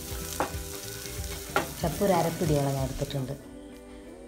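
Onion and coriander masala sizzling in a nonstick pan while it is stirred with a spatula, with a few short scraping strokes. The sizzle stops suddenly about three and a half seconds in.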